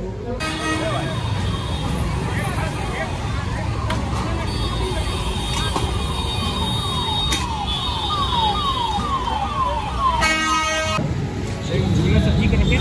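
Roadside market and street noise, with traffic and voices throughout. Through the middle a rapid run of short falling tones repeats a few times a second, and a vehicle horn honks briefly about ten seconds in.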